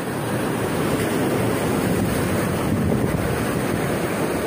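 Sea waves surging and breaking against a rocky shore, a steady loud wash of surf, with wind buffeting the microphone.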